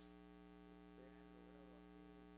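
Near silence with a steady electrical mains hum.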